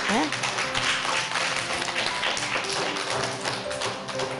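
Children clapping their hands in applause, a quick run of many claps, over soft background music.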